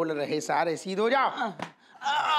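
Men's voices in short, pitched exclamations, with one brief sharp knock about one and a half seconds in.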